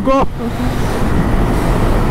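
Wind rushing over an action camera's microphone and motorcycle road noise at highway speed, a steady rush with no clear engine note while the bike slows from about 105 to 83 km/h.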